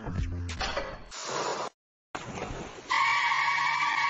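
A ship's horn sounding one steady blast that starts about three seconds in, a cartoon sound effect. Before it comes a rushing noise broken by a brief silent gap.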